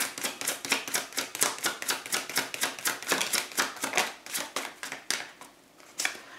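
A tarot deck being shuffled by hand, the cards giving a fast run of crisp clicks, several a second, which thins out and stops about five seconds in.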